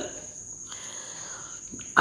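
Pause in a man's speech filled with faint background hiss and a steady high-pitched whine that holds one pitch throughout.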